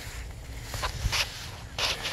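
Brief rustling and scraping as someone moves in among plants, with a few short brushes about a second in and again near the end, over a low rumble.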